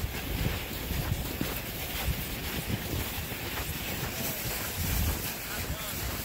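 Wind buffeting the microphone: a continuous rushing noise with irregular low rumbling gusts, and faint distant voices underneath.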